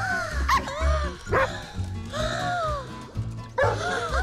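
Cartoon dogs yipping and barking several times in short, gliding high calls over background music with a steady beat.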